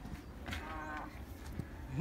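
A person's voice making one drawn-out, wordless vocal sound held roughly on one pitch for about half a second, beginning about half a second in, over a steady low rumble.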